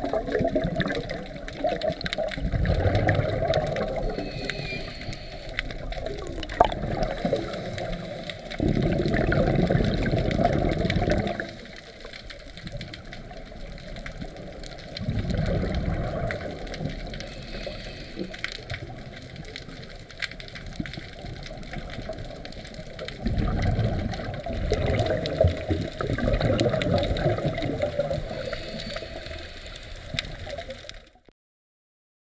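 Underwater recording of a scuba diver's exhaled bubbles from the regulator, coming in repeated bursts a couple of seconds long with quieter water hiss between them.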